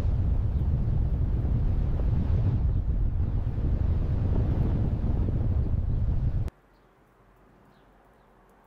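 AI-generated rush of wind from a Veo 3 wingsuit-flight clip: a steady, loud wind noise, heaviest in the low end, that cuts off suddenly about six and a half seconds in, leaving near silence.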